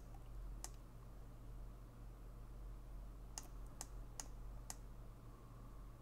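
Faint clicks of a computer mouse, six in all: one at the start, another about half a second later, then four in quick succession between about three and a half and five seconds in, over a steady low electrical hum.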